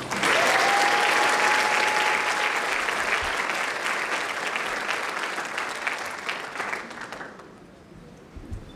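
Audience applauding, starting all at once and tapering off over about seven seconds. A thin, steady whistle-like tone sounds over the first couple of seconds.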